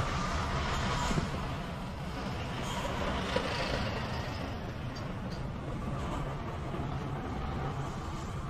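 A steady, low vehicle rumble with a faint hum that holds level throughout, and one small click a little past the middle.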